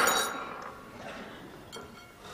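A sharp clink of tableware on the table, ringing out for about half a second, with a lighter click near the end.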